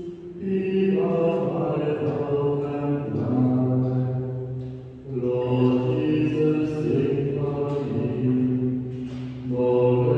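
Slow chant-like singing of a hymn in sustained phrases, with short breath breaks near the start, about five seconds in, and shortly before the end.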